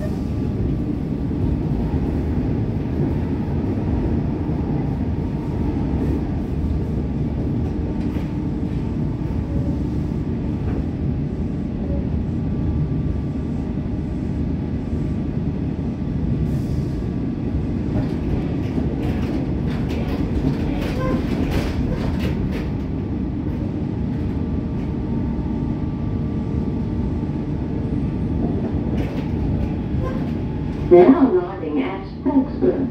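Comeng electric multiple-unit train running at speed, heard from inside the carriage: a steady rumble of wheels and running gear on the track. About two-thirds of the way through comes a run of sharp clicks as the wheels pass over rail joints.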